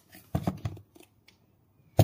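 Handling noise from the plastic case of a 7-inch fish-camera monitor being turned in the hands: a quick run of clicks and knocks about a third of a second in, then a sharp knock at the end.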